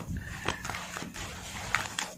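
A deck of oracle cards shuffled by hand, giving irregular soft taps and flicks of card against card, with a sharper tap near the end. A faint steady low hum runs underneath.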